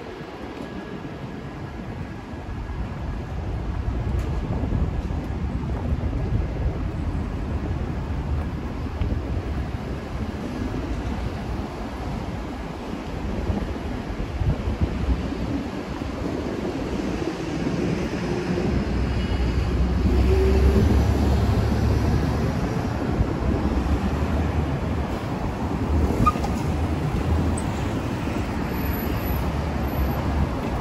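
City street traffic: a steady low rumble of passing vehicles that swells louder about two-thirds of the way through, with a car driving close past near the end.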